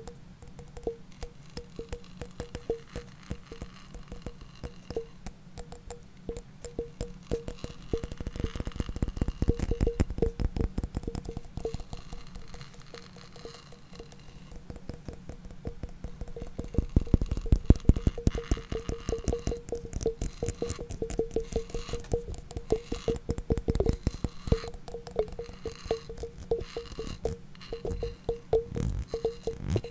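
Rapid, overlapping tapping and clicking, with a short mid-pitched ringing tone that recurs among the taps, growing louder twice.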